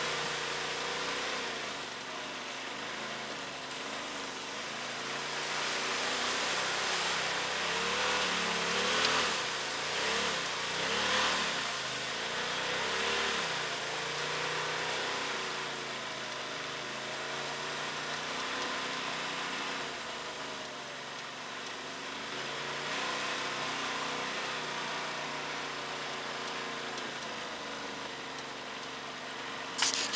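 Polaris RZR side-by-side's engine running over a rough trail, its pitch rising and falling with the throttle. It is loudest for a few seconds in the middle, with a rush of noise.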